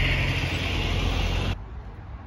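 Road vehicle passing, a steady rumbling road noise that cuts off abruptly about a second and a half in, leaving faint outdoor background.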